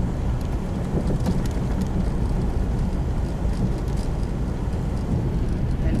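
Car driving slowly, its engine and tyres making a steady low rumble heard from inside the cabin, with a few faint light clicks.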